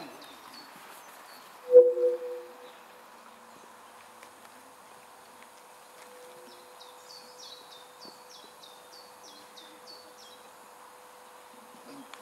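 A small bird sings a run of about ten quick, high chirps, each falling in pitch, in the middle of a quiet pause, over a faint steady hum. A brief loud sound comes about two seconds in.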